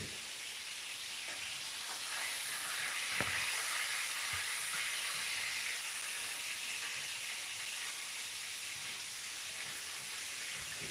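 Sliced vegetables sizzling steadily in hot oil in a deep saucepan, swelling a little in the middle, with one light knock about three seconds in.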